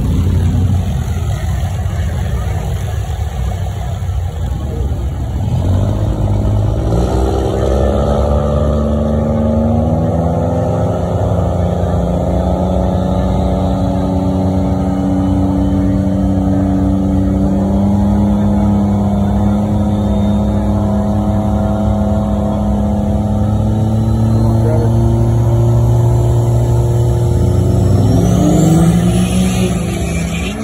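Diesel pickup truck engines at a drag strip start line. They run at a steady raised rev for a long stretch, then rev up quickly near the end as the trucks launch.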